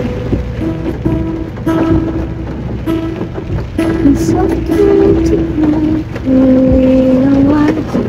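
A woman's voice singing a slow melody unaccompanied in long held notes, moving step by step between pitches, inside a car.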